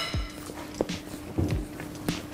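A fork clinks against a plate right at the start. Then quiet background music with a soft, steady beat of low thumps plays.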